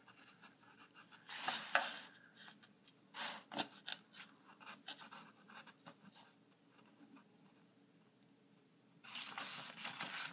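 Faint rustling and scratching of a small package being handled and opened, in short scattered bursts with a quiet spell after about six seconds.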